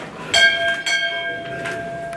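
A metal bell struck twice in quick succession, ringing on with a clear tone that slowly fades.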